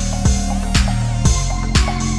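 Background music with a steady beat, about two low drum thumps a second.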